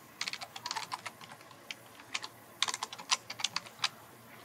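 Typing on a computer keyboard: quick key clicks in short runs, one starting just after the beginning and another a little past halfway, with single keystrokes between.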